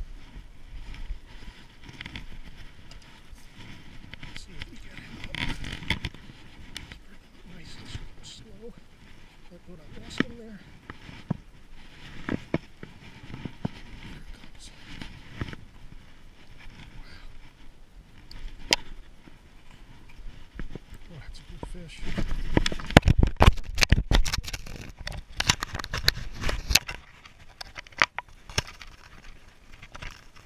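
Clicks, scrapes and rubbing of hands and clothing against a body-worn camera while a striped bass is landed over a pier railing, with a denser run of loud knocks and scrapes about three-quarters of the way in.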